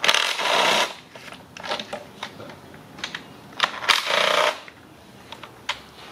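Cordless drill/driver with an E10 reverse Torx socket spinning valve cover bolts loose in two short bursts about four seconds apart. Small metallic clicks and clinks come between the bursts.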